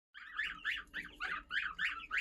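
Newly hatched goslings and Japanese quail chicks peeping, a steady run of short, repeated high calls about three a second.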